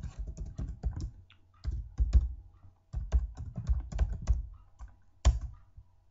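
Computer keyboard typing: quick runs of keystrokes with short pauses between them, then a single harder keystroke about five seconds in.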